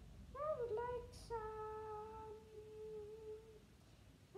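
A girl's voice humming a short tune without words: a few quick notes that rise, then one long held note that fades out near the end.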